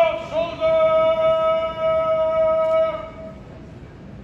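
A man's drawn-out shouted drill command: one loud vowel that slides up at the start, then holds at a steady pitch for about three seconds before stopping.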